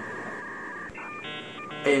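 Electronic telephone-style tones from an edited sound effect: a held two-note beep, then a quick string of changing beeps and a buzzy many-note chord, like phone dialing.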